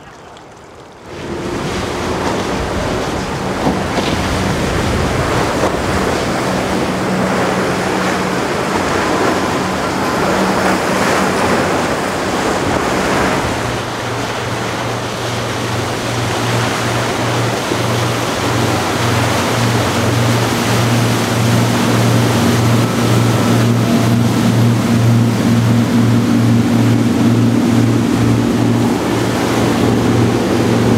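Rush of waves and wind on the microphone as a Sea Ray 420 Sundancer cruiser runs through the surf, its engines adding a steady low drone that grows louder through the second half.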